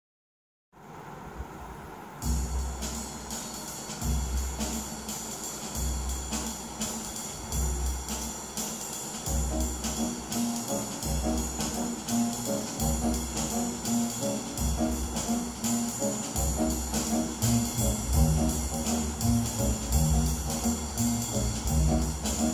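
Recorded music played over ProAc D18 floor-standing loudspeakers driven by a SoulNote SA710 amplifier: a drum groove with steady cymbal ticks over a repeating bass line. It comes in softly and fills out about two seconds in.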